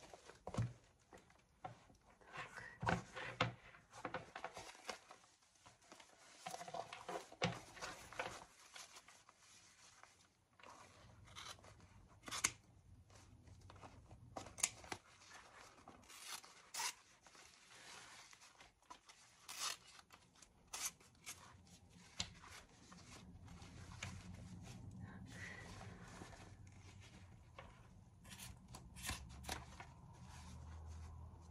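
Scissors snipping irregularly through a leather handbag's fabric lining, with rustling of the bag's fabric as it is handled between cuts.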